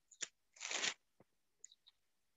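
A sharp click, then a short rustle about half a second in, followed by a few faint ticks: handling noise near the microphone.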